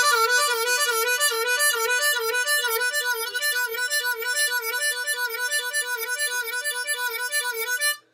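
Diatonic harmonica playing a fast, repeating lick made of many draw notes in a row, the kind of passage that needs a long, controlled inhale. The notes run on without a break and stop suddenly at the end.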